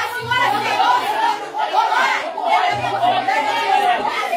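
Several voices talking over one another in an argument, a continuous tangle of chatter.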